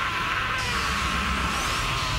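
Anime soundtrack: loud dramatic music mixed with a dense, noisy wash of sound effects over a low rumble.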